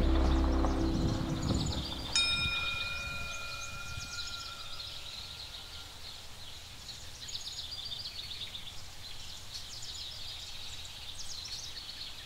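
Background music fades out, and about two seconds in a single chime note rings and dies away over a few seconds. Under it and afterwards, small birds chirp over quiet outdoor ambience.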